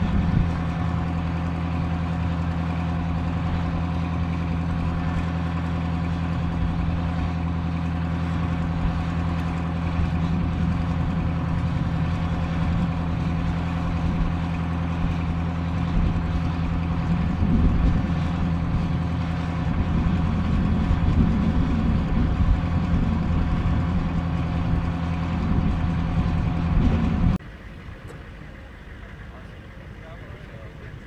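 Diesel engine of an M109 self-propelled howitzer idling with a steady, deep hum, swelling slightly in the second half and cutting off suddenly near the end.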